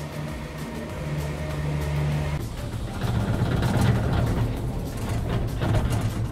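Steady low mechanical hum of a gondola lift station's machinery. About two and a half seconds in it gives way to a rougher, busier rattling sound.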